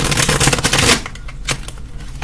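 A tarot deck being riffle-shuffled: a rapid run of card flicks for about the first second, then softer handling of the cards with a single tap about one and a half seconds in.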